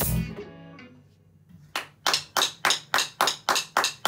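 A rock band's final chord on bass, guitar and keyboard rings out and fades away over the first second and a half. Then comes a steady run of sharp, evenly spaced strikes, about four a second.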